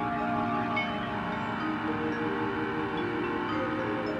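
Jazz big band playing slow, held chords, with mallet percussion ringing over sustained horn tones; the chord moves to new pitches about halfway through and again near the end.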